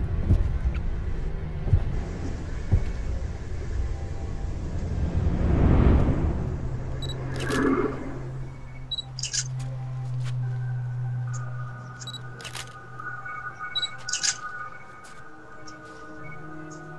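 Horror film score and sound design: a low rumble, a whoosh that swells and fades about six seconds in, then a held low note, with higher sustained notes joining near the end and a few scattered clicks.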